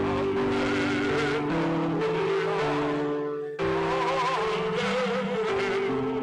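Liturgical music: an organ holds sustained chords that change every second or so, and a singer with vibrato carries the melody above them. There is a brief break with a chord change about three and a half seconds in.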